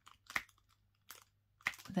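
Diamond painting drill pen pressing resin drills onto the sticky canvas: three small, sharp clicks spread over the two seconds.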